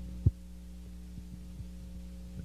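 Steady low electrical hum from the stage sound system, broken once by a short, loud low thump about a quarter of a second in, with a few faint knocks after it.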